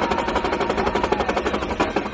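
Marching drums struck with sticks by several drummers together in a rapid, even run of strokes, like a drum roll.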